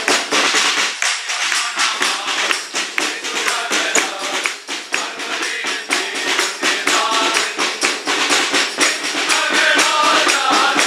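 A group of carolers singing a Christmas carol over a fast, steady beat on a hand-held drum struck with sticks, with a jingling, tambourine-like rattle. The percussion is the loudest part, and the voices come through more clearly near the end.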